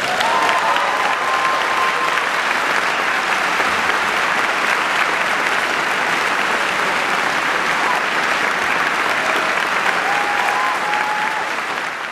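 Audience applauding steadily and densely at the end of a trumpet and piano recital piece, with a faint drawn-out call or whistle from the crowd early on and again near the end.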